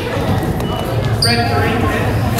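Sounds of a basketball game in a gym: a referee's whistle gives one short, shrill blast a little over a second in, followed by a raised voice. A ball bounces on the hardwood underneath.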